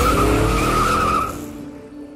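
A car's tyres squealing over engine noise, fading away about a second and a half in as soft music takes over.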